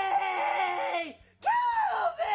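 A high-pitched cartoonish voice screaming in a long, drawn-out wail that breaks off just past a second in. It is followed by a shorter second cry that rises and falls in pitch.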